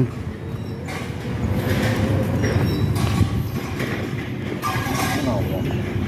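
Outdoor city ambience: a steady low rumble of background noise, with faint voices about five seconds in.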